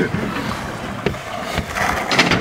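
Wind rushing over an outdoor camera microphone, with a few scattered knocks and clicks.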